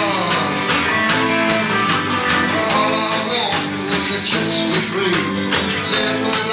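Live rock band playing: guitar over a steady drum beat.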